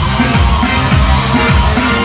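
Loud live band dance music for a line dance, with a steady beat of deep bass notes about twice a second.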